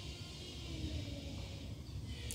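Quiet room tone: a steady low rumble with a faint hiss, and no distinct sound event.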